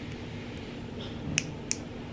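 A few light, sharp clicks of long fingernails handling a small pimple patch as its backing is peeled off, the two sharpest close together about a second and a half in.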